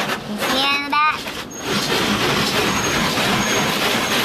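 Automatic car wash heard from inside the car: a steady rush of water spray and rotating brushes against the car body and windows, settling into an even wash noise about two seconds in.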